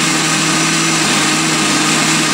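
Electric countertop blender running steadily with a constant motor hum, puréeing a cooked cranberry, tamarind and spice mixture into a relish.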